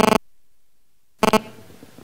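A steady electrical buzz on the audio line stops abruptly into dead silence. About a second later it comes back for a moment, then gives way to faint room tone.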